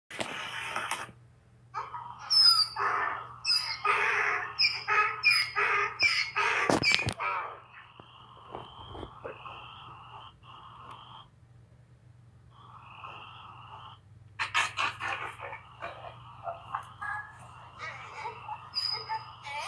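Dog whining: bursts of short, rising and falling cries, a thinner, steadier whine in the middle, then more short cries near the end.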